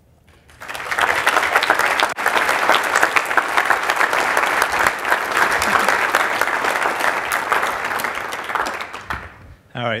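Audience applause: many hands clapping, starting about half a second in and fading away near the end.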